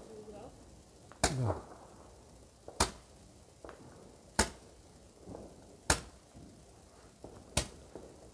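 Fireworks going off at ground level in a steady series of sharp bangs, five in all, about one every second and a half.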